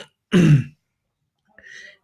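A man clears his throat once, a short rasp about half a second long.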